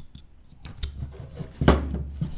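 Wood carving knife slicing into a block of Ficus benjamina wood: a few short cutting strokes, the loudest and longest a little after a second and a half in.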